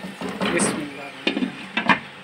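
Chicken pieces shifted with a spatula in an oiled frying pan, then a glass lid set down on the pan's rim, giving two sharp clinks in the second half, the second one the loudest.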